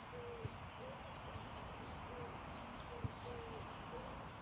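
Low, short hooting bird calls repeated several times over a steady outdoor background hum, with two soft thuds of a football being touched on artificial turf; the second thud, near the end, is the loudest sound.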